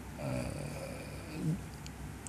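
A man's pause in speech: faint breathing and a short, low murmured hesitation, over a steady low hum.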